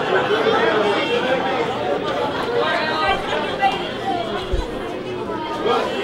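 Indistinct chatter of several people talking at once in an audience, with no single clear voice.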